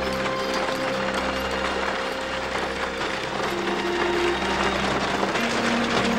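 Horse-drawn buggy rolling along: a dense, continuous rattle and clatter of wheels and hooves, with sustained notes of background music underneath.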